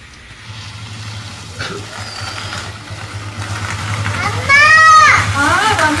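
Motorcycle engine running at low revs as the bike rides in, growing steadily louder. About four and a half seconds in, a loud drawn-out call from a voice, followed by more voice.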